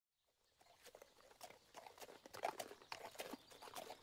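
Horse hooves clip-clopping, fading in from silence and growing louder, as a riding sound effect.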